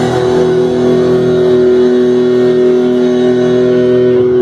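Loud electric guitar through an amplifier, a chord held and ringing out steadily.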